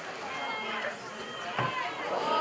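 Shouted calls from people at a rugby league game during open play, over a steady outdoor background: a short high call a little before halfway and a louder shout near the end.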